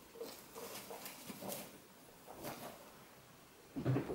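Faint rustling and soft small sounds of a guinea pig moving about in hay and wood-shaving bedding, with a short louder low sound near the end.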